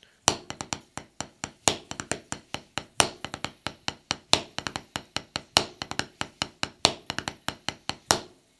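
Drumsticks playing on a practice pad set on a snare drum: a double paradiddle with a drag (a quick grace double stroke) on the first left-hand note, which makes the drag paradiddle number one. It is an even stream of crisp taps with a louder accented stroke about every 1.3 seconds.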